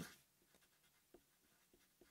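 Near silence with faint short strokes of a felt-tip marker writing on paper.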